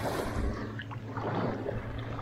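Shallow water sloshing and lapping as someone wades through it, with a steady low hum underneath.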